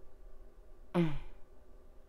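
A woman's short, breathy sigh with a falling pitch about a second in, over faint room hum.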